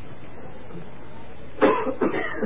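A steady hiss from the recording, then a man gives a short, sudden cough near the end.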